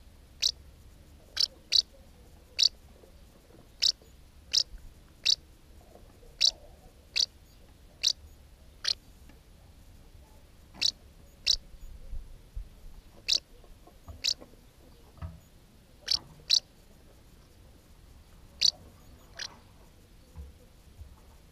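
House martin giving short, high chirping calls from its mud nest, about one a second at uneven intervals, some in quick pairs.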